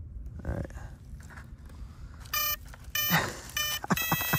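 Electronic speed controllers of a twin ducted-fan RC model beeping through their motors as the battery is connected: three short tones, a little over half a second apart, starting about two seconds in. These are the power-up tones that show the speed controllers have power.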